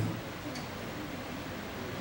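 Steady low hiss of room tone in a pause between a man's sentences, with one faint click about half a second in.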